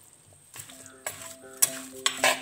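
Steel spoon stirring and scraping masala-coated chicken pieces in a pot, with sharp clinks of the spoon against the pot about one and one and a half seconds in. Background music comes in about half a second in.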